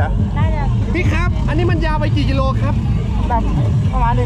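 Voices talking close by over a steady low rumble.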